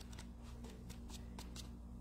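Faint rustling and light ticking of loose printed paper pages being handled and turned, over a low steady hum.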